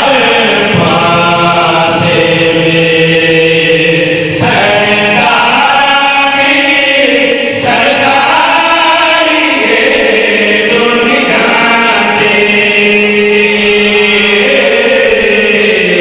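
Several men singing a devotional qasida together: a lead reciter and backing singers on microphones, chanting in unison with long held notes.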